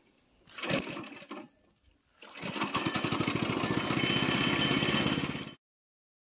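Small gasoline engine of a Woodland Mills HM122 bandsaw mill, with a brief burst of noise about a second in, then running steadily and loudly from about two seconds in. The sound cuts off suddenly near the end.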